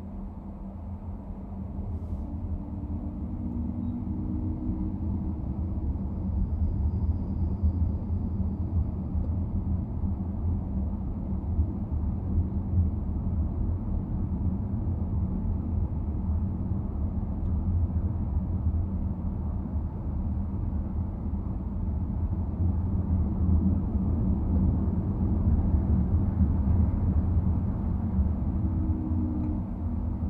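A car driving in city traffic: steady low road and engine rumble with a faint hum, building over the first few seconds and then holding.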